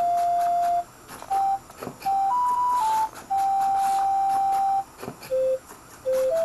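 A simple tune played in pure electronic beep tones, one note at a time, each held steady, with short gaps between them. It opens on a long note, rises to its highest note in the middle, then holds a long note and ends on a lower one.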